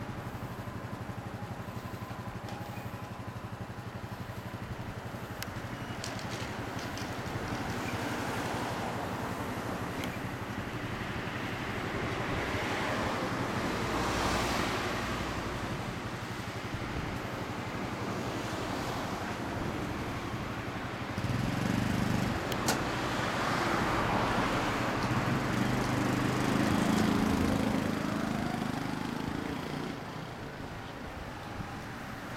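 Yamaha Cygnus-X SR scooter's single-cylinder engine idling steadily through an aftermarket Realize Racing exhaust, louder about two-thirds of the way in.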